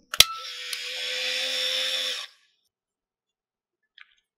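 A sharp click, then the Contax TVS's built-in film-advance motor whirs steadily for about two seconds and stops abruptly, winding the freshly loaded film on to the first frame.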